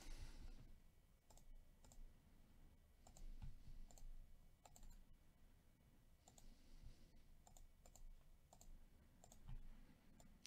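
Near silence with faint computer mouse clicks, a dozen or so at irregular intervals, as items are picked from right-click copy and paste menus.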